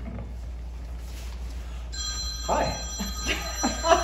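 A telephone ringing, starting about halfway through, its ring a chord of steady high tones.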